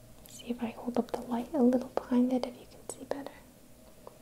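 A woman's soft voice speaking in a near-whisper for about three seconds, words unclear, with a couple of short sharp clicks near the end.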